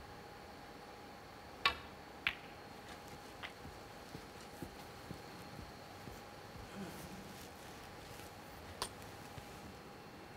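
Snooker balls on a match table: two sharp clicks about half a second apart as the cue strikes the cue ball and the cue ball hits an object ball, followed by a few faint knocks as the balls run and settle. Another single click comes near the end, over a low steady hum.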